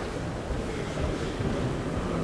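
Steady, featureless background noise of a large sports hall during a judo bout, a low rumble with no clear voices or impacts.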